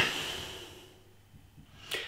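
A man breathing out through the nose, the breath fading away over about a second, then a short breath in near the end.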